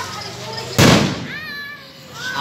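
An aerial firework shell bursting overhead with one loud bang a little under a second in, followed by a voice crying out.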